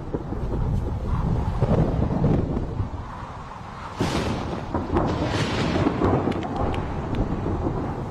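Thunder rumbling, with a sudden louder peal about halfway through.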